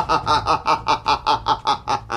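A man's exaggerated evil villain laugh: a rapid, even run of 'ha-ha-ha' pulses, about six a second.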